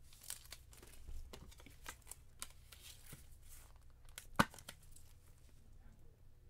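Soft plastic card sleeve rustling and crinkling under gloved hands as a trading card is slid into a rigid plastic holder, with many small scrapes and ticks and one sharp click about four seconds in.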